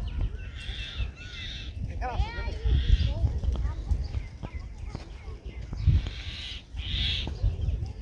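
Wind rumbling on the microphone, with birds chirping and calling in the trees, including a quick run of high, chirping calls about two seconds in.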